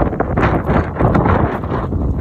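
Wind buffeting a phone's microphone: a loud, uneven rumbling rush that flutters with the gusts.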